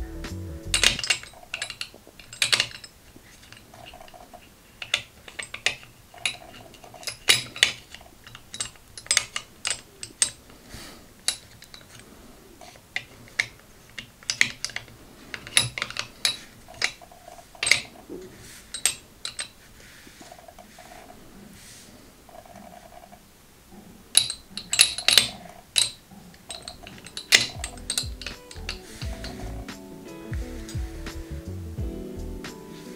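Metal balls clicking and clinking against one another as they are picked up and set into a wooden triangular tray. The clicks come in irregular clusters, with a busy run of them late on.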